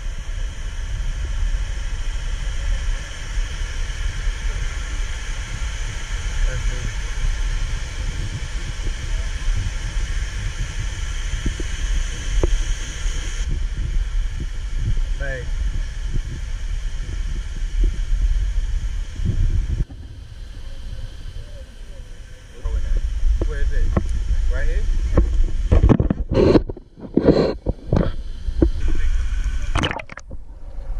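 Wind buffeting the camera microphone over a steady rush of water, with people's voices heard indistinctly, louder near the end.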